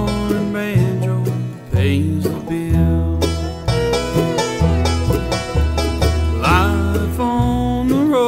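Live bluegrass band playing an up-tempo tune: five-string banjo rolls and strummed acoustic guitars over a walking upright bass line.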